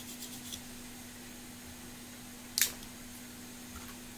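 A few short scratchy strokes of a toothbrush on a graphics card's circuit board at the start, then a single sharp scrape or click a little after halfway. A steady low hum runs underneath.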